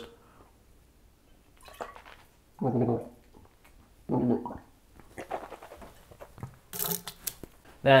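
A man gargling a mouthful of water with his head tilted back: two short gurgling bouts, about two and a half and four seconds in, with small wet mouth sounds between, then a short hissing burst about seven seconds in.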